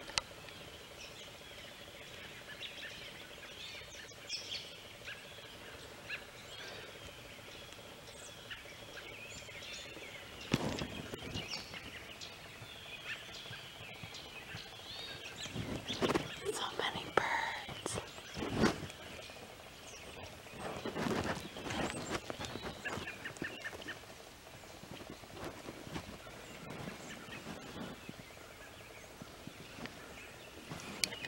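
Several birds chirping and calling on and off throughout. Around the middle come bursts of crackling footsteps and brushing through dry grass and leaves.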